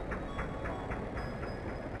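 Rhythmic mechanical clatter, about four knocks a second, over a steady low rumble.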